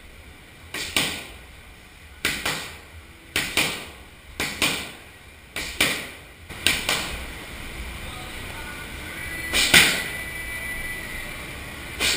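Strikes landing on padding in quick pairs, one hit following the other about a third of a second later. Six such pairs come about a second apart, then a single louder hit near the end.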